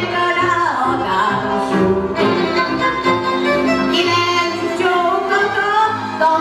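A woman singing into a microphone with a live string band behind her, violins and double bass accompanying.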